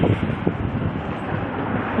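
Wind rushing over the microphone of a camera held by a passenger on a moving motor scooter, a steady noise with the scooter's running and road noise underneath.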